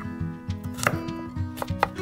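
A miniature kitchen knife chopping onion on a tiny wooden cutting board: a few separate sharp cuts, the loudest about a second in, over light background music.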